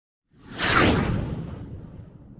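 A whoosh sound effect with a deep rumble underneath, coming in suddenly about a third of a second in and fading away slowly over the next second and a half, as for an animated logo reveal.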